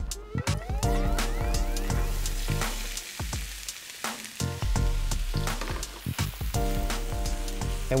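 Diced onion and celery sizzling in hot oil in a nonstick frying pan as they are tipped in to saute, a steady hiss under background music.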